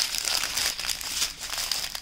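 Small clear plastic zip bags of diamond painting drills crinkling as they are picked up and handled, a dense run of crackles.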